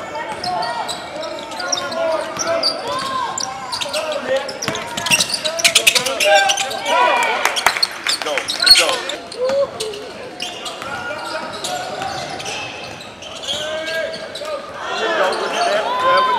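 Live basketball play on an indoor hardwood court: the ball bouncing on the floor as it is dribbled, with sharp sneaker squeaks and players' voices.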